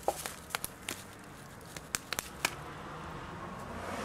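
A few short sharp taps, the last three evenly spaced about a quarter second apart: fists striking open palms in a game of rock-paper-scissors.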